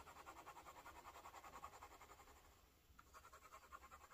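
Faint scratching of a medium steel fountain pen nib hatching back and forth on notebook paper, several strokes a second, with a short pause about two and a half seconds in.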